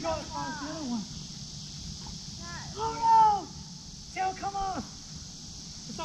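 Short wordless voice calls and exclamations, three in all, the loudest a high-pitched call about three seconds in. A steady high insect drone from the trees runs underneath.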